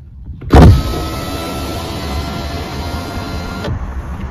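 Rear door electric window of a 2022 Volkswagen Lavida being lowered. A loud thump about half a second in as it starts, then a steady motor whine for about three seconds that cuts off suddenly as the glass stops.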